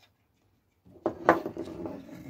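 Handling noise close to the camera: a couple of sharp knocks about a second in, then rubbing and scraping as a hand brushes near the lens.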